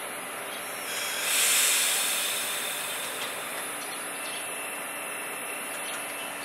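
Choshi Electric Railway car 2001 standing at a platform, with a burst of compressed-air hiss from its brakes about a second in that fades over a second or two, the sound of the brakes releasing as the train starts to pull away. Steady low noise from the waiting train runs underneath.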